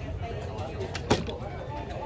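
Background murmur of faint voices over a steady low rumble, with one sharp click about a second in.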